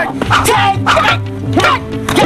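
Film soundtrack music with a steady low drone, cut through by a quick run of short, sharp yelping cries, about five in two seconds, amid a hand-to-hand silat fight.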